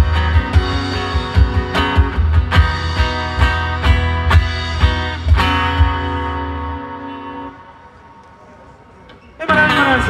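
Live acoustic band playing the last bars of a slow rock song: strummed acoustic guitars over regular box-drum hits and a bass line, closing on a held chord that dies away about seven seconds in. A burst of crowd noise and voices comes in suddenly near the end.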